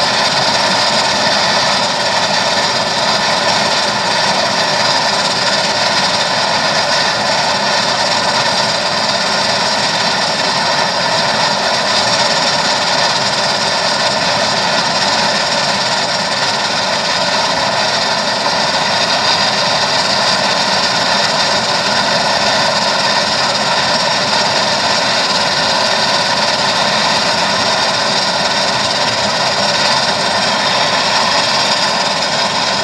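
Turboprop engine of an SMG-92 Turbo Finist running steadily at ground idle, a constant turbine whine over the propeller's noise.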